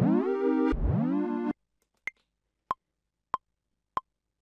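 Two synth notes played from Maschine software, each with a quick downward pitch dip at its start, ending about a second and a half in. Then the Maschine metronome starts clicking, about one click every two-thirds of a second, with a higher click on the first of every four beats as pattern recording begins.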